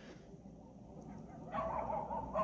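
A quiet pause with a few faint, short animal calls in the background during its second half.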